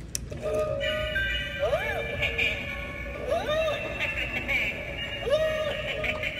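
Animated skeleton teeter-totter Halloween decoration playing its electronic tune after its try-me button is pressed, with swooping notes that rise and fall every second or two.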